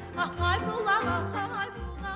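A woman singing a folk-style song in quick, wavering, ornamented trills and turns, over instrumental accompaniment with a low beat.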